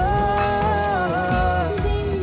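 Bollywood ballad music: a slow, sustained melodic line gliding gently in pitch over low bass notes.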